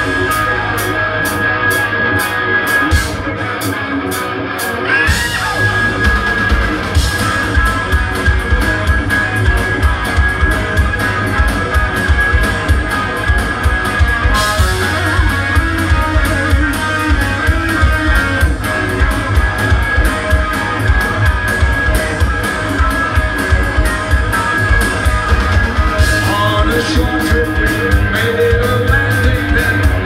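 Live hard rock band playing a fast song's intro: electric guitar through Marshall amps, bass and a pounding drum kit. The full low end comes in about five seconds in, and a voice starts singing near the end.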